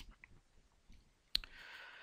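Near-silent pause with a single sharp click about two-thirds of the way through, followed by a faint hiss.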